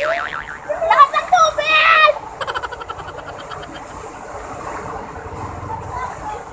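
People shrieking and yelling for about the first two seconds, without clear words. Then comes the steady rush of water pouring over a small waterfall into a pool, with splashing.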